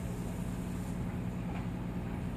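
Aquarium air pump running with a steady low hum, and air bubbling up through the tank water.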